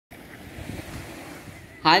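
Steady hiss of wind and small waves washing up on a sandy shore, with some low buffeting on the microphone. Near the end a boy's voice says "Hi", the loudest sound.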